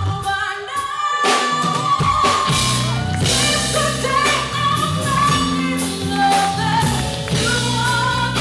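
A live band plays a soul/R&B song with a woman singing lead over drums, electric guitars, bass and keyboard. Right at the start the bass and drums drop out for about a second under a held sung note, then the full band comes back in.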